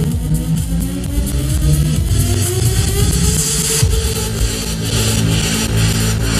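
Loud electronic dance music from a DJ set over a festival PA, recorded from the crowd on a microphone that distorts with pops. A rising synth sweep builds over a steady bass and gives way to a steady beat about four seconds in.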